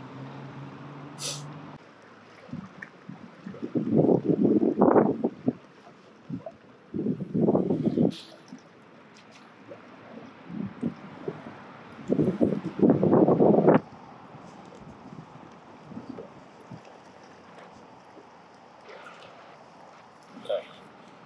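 Water churning and gurgling around a fishing kayak's hull in three bursts of a second or so each, as the kayak is moved into position. A low steady hum runs for the first two seconds.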